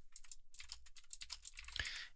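Faint, quick typing on a computer keyboard: a rapid run of light key clicks.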